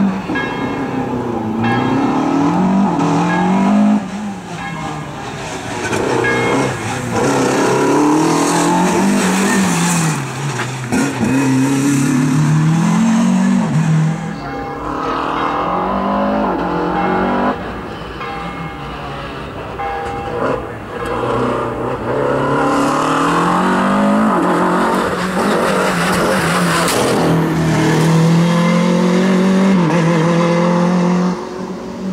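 Renault Clio RS Cup race car engine revving hard and dropping back over and over, as the car accelerates, shifts and lifts off through the slalom.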